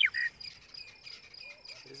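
Monotonous lark singing one short whistled phrase at the very start: a clear note, a quick downward-sweeping note and another clear note. It is the loudest sound here; faint high notes and a steady high background tone follow.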